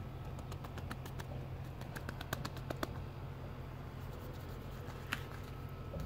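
Fingertips tapping and scratching on a concrete path: a quick run of light clicks, thickest about two to three seconds in, with one louder tap near the end, over a steady low hum.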